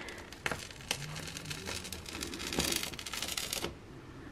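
Adhesive rug gripper pads peeling away from a bath mat and tile floor: a crackling, tearing sound with scattered clicks, densest from about two and a half to three and a half seconds in.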